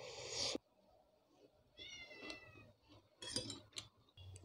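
Instant noodles slurped from a fork, then a short high mewing cry that falls slightly in pitch about two seconds in, then a few sharp clicks of a metal fork on a plate.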